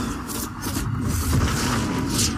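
Action-movie soundtrack sound effects: a continuous low rumble with several short rushing whooshes over it, as debris and dust fly through a collapsing scene.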